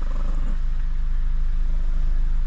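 A small long-haired dog growling low and steadily.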